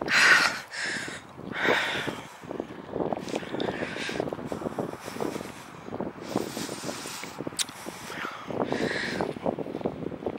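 A person walking over rough grass: footsteps and rustling, with a louder breath about every two seconds.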